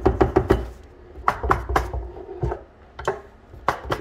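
A Tesla Wall Connector's plastic housing knocking and clattering against a wooden workbench as it is tipped and handled, to shake a stubborn screw loose. There are several clusters of sharp knocks, some with a dull thud.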